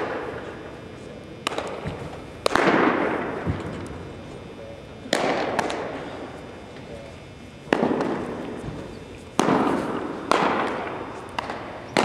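Baseballs smacking into catchers' mitts, about eight sharp pops at irregular intervals, each leaving a long echo around a large gymnasium.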